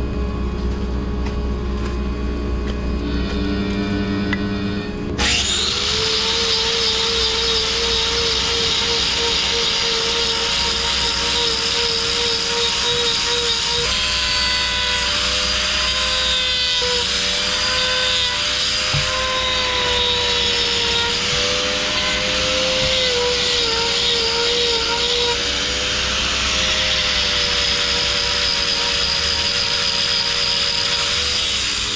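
A steady low machine hum. About five seconds in, a handheld angle grinder starts up and runs on against a cow's hind hoof, trimming the claw. Its whine wavers and dips in pitch as the disc is pressed into the horn and moved back and forth.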